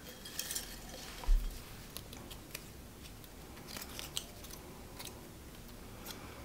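Small folded paper slips rustling and shifting in a glass jar as one is picked out and unfolded. Faint scattered crinkles and small clicks, with a soft low thump about a second in.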